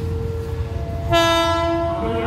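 Diesel locomotive horn of an approaching express train: a loud, steady multi-note blast starting about a second in and held, after a fainter single steady note.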